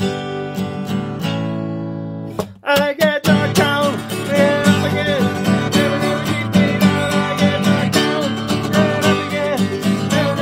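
Acoustic guitar strumming chords for an instrumental break. The strumming drops out briefly about two and a half seconds in. A wordless sung melody with a wavering pitch then comes in over the strumming.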